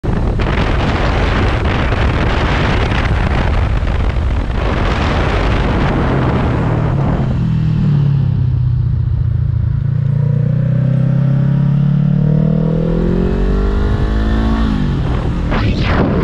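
Riding a sport motorcycle: heavy wind noise on the microphone for the first several seconds, then the engine note comes through as the bike slows and runs at a low steady pitch. Near the end the engine pitch climbs as the bike accelerates, then wind noise takes over again.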